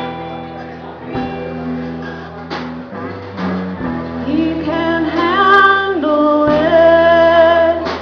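Ukulele strummed in slow chords, about one strum every second and a quarter. From about halfway through, a voice sings long held notes over it.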